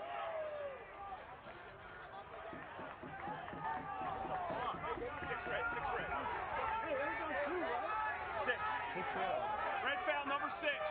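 Many voices talking and calling out over one another at a lacrosse game, from the players on the field and the crowd in the stands. They grow louder about halfway through.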